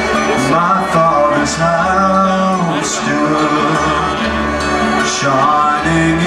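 Live acoustic country-folk band playing an instrumental passage: strummed acoustic guitars, banjo and upright bass under a held melodic lead, with no singing.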